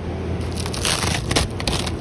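Crackling and crinkling as the cover sheet over a beehive's top bars is peeled back, with the densest crackling about a second in.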